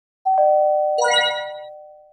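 Channel-logo intro chime: two ringing tones, the higher stepping down to the lower like a ding-dong, then a bright sparkling shimmer of high notes about a second in, all fading away slowly.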